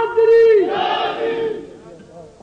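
A crowd of men's voices shouting a drawn-out chant together, fading away after about a second and a half.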